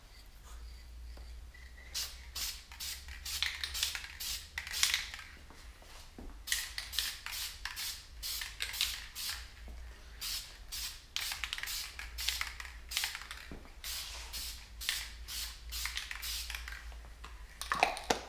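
Aerosol can of clear coat spraying in many short hissing bursts with brief gaps between them, over a steady low hum.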